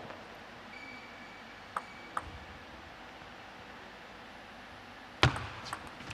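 A table tennis ball clicking twice on the table, a couple of seconds in, then a quiet stretch; near the end a loud thump, and the sharp quick clicks of the ball off bats and table as a rally begins.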